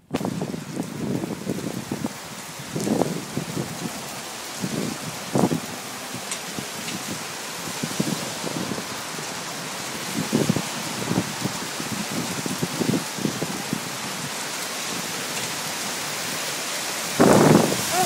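Heavy rain falling on a street and pavement, a steady hiss that slowly grows louder, with irregular gusts of wind buffeting the microphone and a loud gust near the end.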